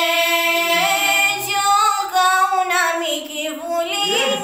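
A young girl singing solo, holding long notes that bend slowly up and down in pitch.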